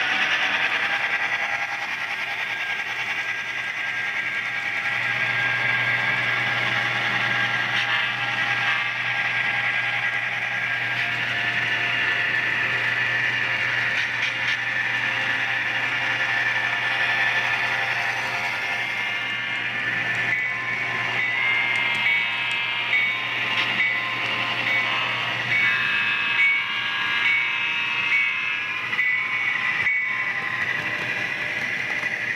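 Sound-equipped HO scale model of an EMD FT diesel locomotive, its Tsunami DCC sound decoder playing a diesel prime mover through the model's small speaker as the locomotive runs along the track. In the second half a horn sounds in a series of short blasts.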